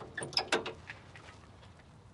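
A few light metallic clicks and rattles in the first second as the hood prop rod of a 1971 Ford Bronco is unclipped and swung up to hold the hood open.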